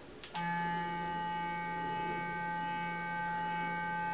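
Clarisonic sonic makeup brush with a foundation-brush head switching on about a third of a second in, then running with a steady electric hum.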